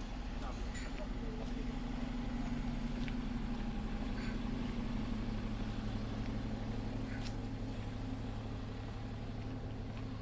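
Street traffic: a steady low engine hum from road vehicles, swelling to a peak midway through as one passes, then easing off.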